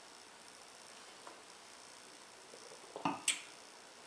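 Quiet room tone, then about three seconds in two brief knocks, the second a sharp click: stemmed beer glasses set down on a wooden table.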